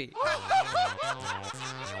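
A cartoon character's snickering laugh, several quick 'heh' laughs in the first second that then fade. Under it runs comic background music with a steady, plodding low bass pattern.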